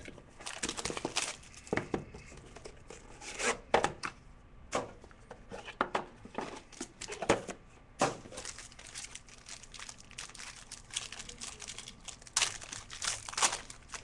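Plastic wrapping on a box of football trading cards being torn open and crinkled, in irregular bursts of crackling with a few sharper rips.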